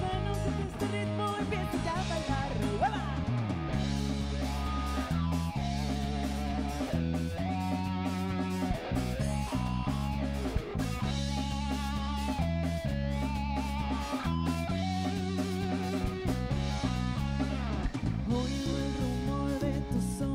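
Live band playing, with electric guitar to the fore over bass guitar and drum kit.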